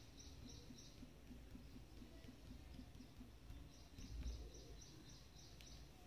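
Near silence with faint high bird chirps repeating about four times a second, in a short run at the start and another from about three and a half seconds in, and one low thump a little after four seconds.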